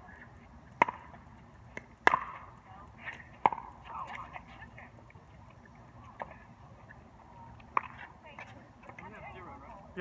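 Sharp knocks of a plastic pickleball against paddles and the hard court, about half a dozen scattered hits with the loudest about two seconds in.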